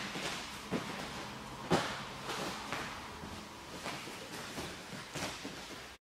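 Hands and bare feet padding on a training mat during a wheelbarrow walk: a string of soft, irregular thumps, the loudest about two seconds in.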